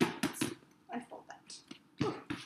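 Handling noise from a Louis Vuitton Speedy Bandoulière 25 monogram canvas handbag being turned over in the hands: a quick series of short rustles and taps.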